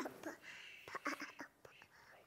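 Faint whispered speech.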